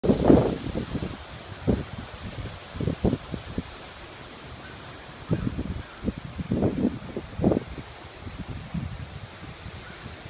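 Strong straight-line thunderstorm winds gusting against the microphone in irregular surges, loudest at the very start and again about five to seven seconds in. Beneath them is a steady rush of wind through the trees.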